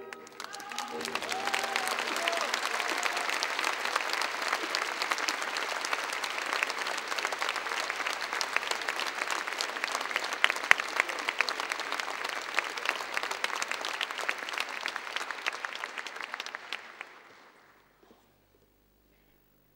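Theatre audience applauding with dense, steady clapping. It swells up in the first two seconds as the last orchestral notes die away, then fades out near the end.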